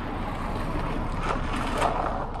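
A car rolling slowly past on the street, its tyre and engine noise mixed with wind on the microphone and swelling a little near the end.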